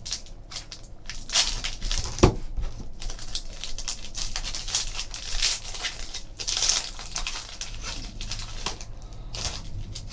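Trading card pack wrapper crinkling and being torn open, with cards handled in irregular crackles, and a sharp knock about two seconds in.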